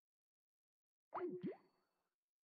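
Skype's call-ended sound: a short electronic bloop of quick pitch glides up and down, about a second in. It marks a call that did not go through because the line was busy.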